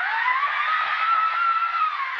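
Sound effect of an old film projector running up: a steady hiss with a whine that climbs in pitch over about a second and then holds.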